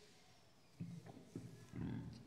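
Quiet room tone with three faint, short low sounds: about a second in, a little later, and near the end.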